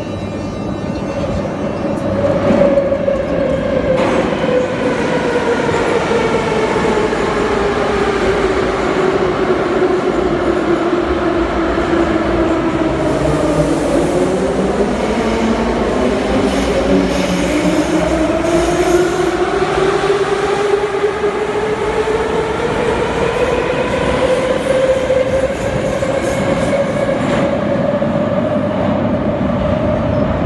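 Moscow Metro train traction motors whining: one train's whine falls steadily in pitch as it brakes into the station, and through the second half another's rises steadily as it accelerates away, over loud wheel and rail rumble in the station.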